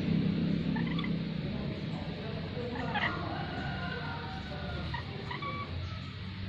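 Caged lories giving short, scattered squawks and chirps, with a denser burst of calls about three seconds in.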